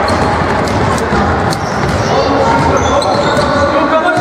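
Basketball bouncing on a wooden sports-hall floor during play, with players and spectators calling out.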